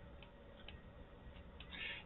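Faint, irregular light ticks of a stylus tapping on a tablet surface while numbers are handwritten.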